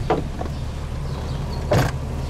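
A car door shutting with a short thud just after the start, then a louder, sharp knock near the end, over a steady low hum.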